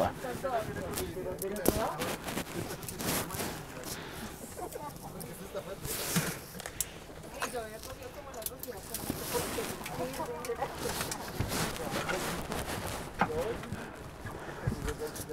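Background chatter of boarding passengers in an airliner cabin, with scattered knocks and rustles.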